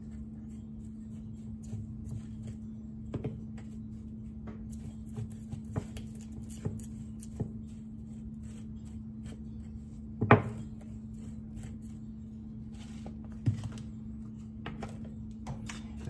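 Dried loose-leaf herbs being poured and coaxed out of a small glass jar into a tall glass spice jar: faint scattered rustles and small clicks, with a sharp glass knock about ten seconds in and a lighter one a few seconds later. A steady low hum runs underneath.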